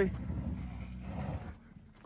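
Honda minivan's engine and tyres on a loose gravel road, a low hum that fades as the van pulls away, dropping to near silence near the end.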